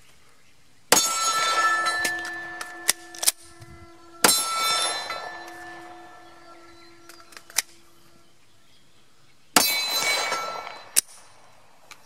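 Three 9mm pistol shots from a Glock 48, fired a few seconds apart, each followed by a steel target ringing on several steady tones for a couple of seconds. A few fainter sharp clicks fall between the shots.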